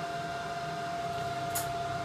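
The CNC-converted Titan TM20LV mini mill's table traversing under power: a steady whine from the axis drive motor that cuts off just before the end as the table stops at its position.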